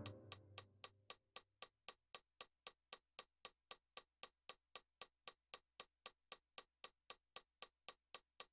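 The last notes of a digital piano die away in the first second, leaving a faint metronome clicking steadily, about four clicks a second (around 230 beats a minute).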